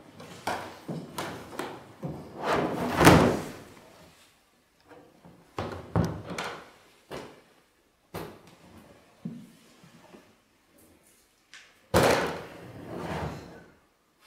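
Hard plastic Hardcase drum case being handled and rummaged in: a series of knocks and thuds as its lid and shell are moved, the loudest about three seconds in, with others near six and twelve seconds.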